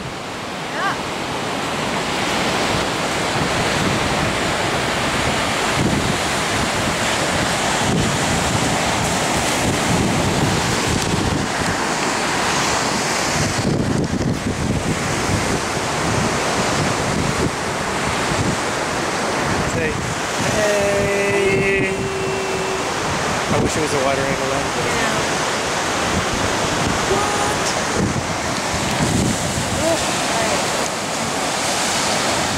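Surf breaking on a sandy beach, a steady rushing wash of waves, with wind buffeting the microphone.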